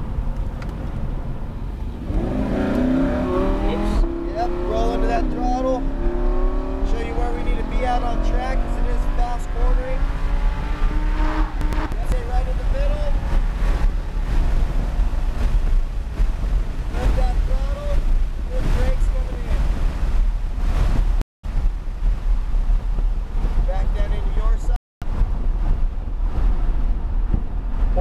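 Lamborghini Huracán LP610-4's 5.2-litre V10 accelerating hard out of a slow corner, heard from inside the cabin, its pitch climbing for about ten seconds as the car gathers speed to over 100 mph, then easing off as it slows for the next corner. The sound cuts out briefly twice near the end.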